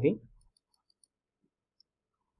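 The last syllable of a spoken word, then near silence with a few faint, sparse computer mouse clicks.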